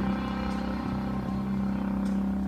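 Quiet passage of a backing track played through a PA: a low sustained drone held steady, with a brief dip near the end before guitar comes back in.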